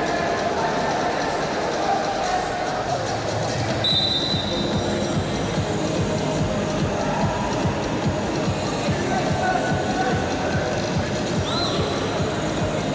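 Referee's whistle blown in one long, steady blast about four seconds in, stopping the bout, and a short rising toot near the end, over the din of voices in the arena.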